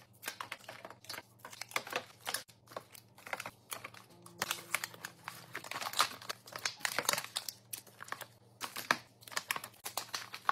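Filled plastic breastmilk storage bags crinkling and clicking as they are set upright one after another into a clear plastic bin: a dense, uneven run of short taps and rustles.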